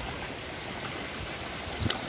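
Spring water running from an inlet pipe into a concrete fish pond: a steady splashing trickle.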